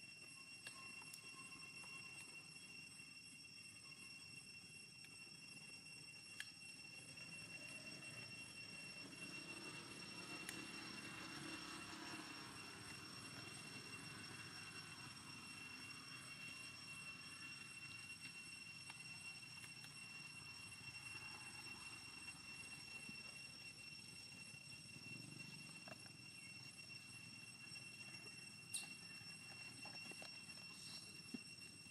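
Near silence: faint outdoor background with a few steady high-pitched tones and occasional faint ticks.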